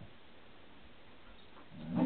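Two dogs play-fighting, and near the end one dog starts a low growl.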